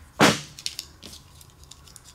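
A single sharp snap or clack about a quarter second in, from plastic injector-connector and loom parts and hand tools being handled on a wooden workbench, followed by a few faint ticks.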